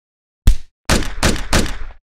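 Intro sound effects: one sharp heavy thud about half a second in, then a quick run of four heavy hits that cuts off abruptly.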